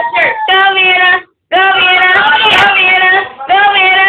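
A young child singing wordless long held notes in a high voice, with a short pause a little over a second in.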